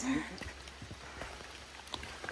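Light rain pattering, with a few scattered drips or taps over a faint steady hiss.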